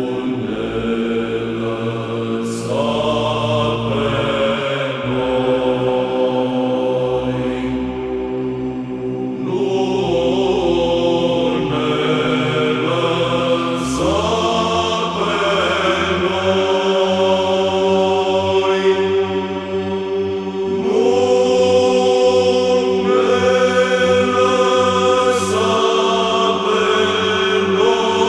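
Romanian Orthodox psaltic (Byzantine) chant in the fifth tone, sung without instruments: a melody line moving over a steady held drone note (the ison), with the drone shifting to a new pitch about halfway through.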